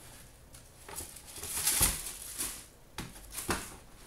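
Tissue paper rustling and a cardboard shoebox being handled as a shoe is packed away, with a few light knocks. The loudest rustle comes just before two seconds in.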